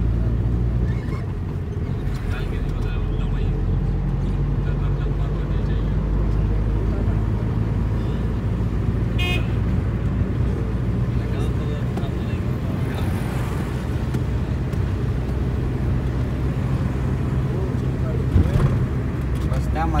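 Car driving along a wet road, heard from inside the cabin: a steady low engine drone with tyre and road noise. A short, higher pitched sound comes about nine seconds in, and there is a brief louder knock near the end.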